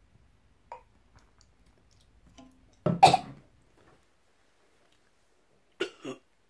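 A man coughs loudly about three seconds in, then gives a shorter cough near the end. He is reacting to a swallow of coffee soda he finds disgusting.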